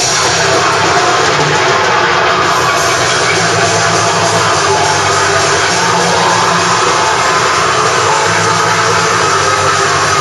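Death metal band playing live: distorted electric guitars and a drum kit, loud and without a break.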